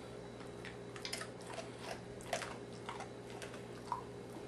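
Dog's mouth making a few short clicks and smacks, spaced irregularly, over a steady low electrical hum.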